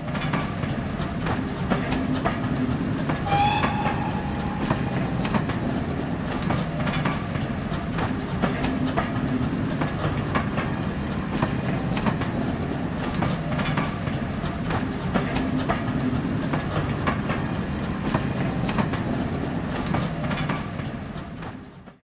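Train of red coaches running past at speed, its wheels clicking steadily over the rail joints. A brief high tone sounds about three seconds in, and the sound fades away near the end.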